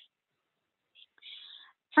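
A pause with near silence, then a faint, breathy hiss a little past the middle: a speaker drawing breath before talking again.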